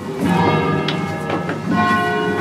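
Church bells rung a distesa by hand ropes, swinging so that several bells strike one after another. Their tones ring on and overlap.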